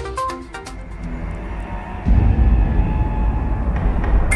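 News programme closing theme music: a short melodic phrase that fades within the first second, then a deep, low rumbling swell that comes in about two seconds in.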